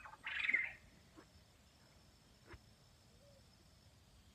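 A single short, high-pitched, bird-like animal call lasting about half a second just after the start, its source unidentified, followed by a couple of faint ticks.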